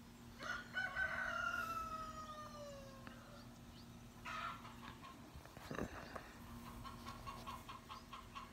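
A bird calling: one long call that falls slowly in pitch over about three seconds, a couple of shorter calls, then a run of short quick notes near the end.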